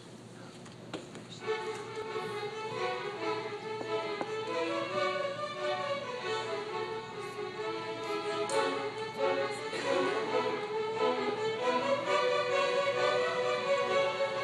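Seventh-grade string orchestra starts playing about a second and a half in, violins carrying a melody of held notes over the lower strings, gradually getting louder.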